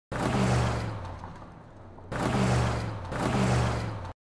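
Intro sound effect of rushing whooshes over a low rumble, in three surges: the first starts suddenly and fades over about a second and a half, the next two follow about two and three seconds in.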